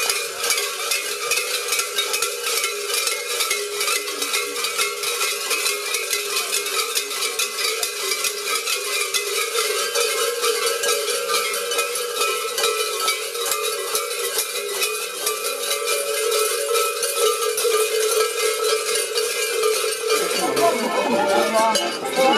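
Many large bells worn on the belts of Liški pustje carnival maskers clanging continuously as they walk, a dense, steady jangle with a ringing tone underneath. Near the end the jangle thins and voices come in.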